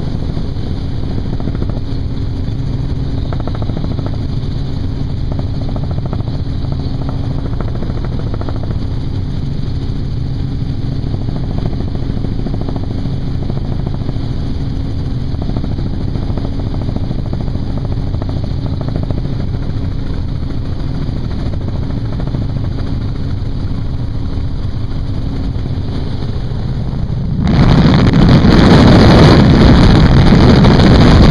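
Helicopter flying with its doors off, heard from inside the cabin: a steady rotor and engine drone with a constant hum. Near the end it is suddenly swamped by a loud rush of wind hitting the microphone.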